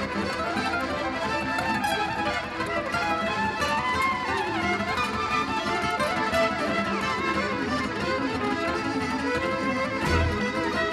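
Gypsy jazz band playing live, a violin leading with gliding, ornamented lines over acoustic guitar and accordion.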